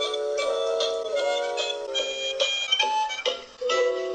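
Harmonica playing a tune in chords, the notes changing several times a second, with a brief break in the playing about three and a half seconds in.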